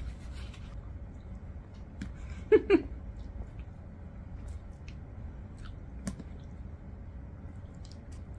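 Close-up mukbang eating sounds: a person chewing spaghetti, with scattered small wet mouth clicks. About two and a half seconds in come two short vocal sounds from the eater, the loudest thing heard.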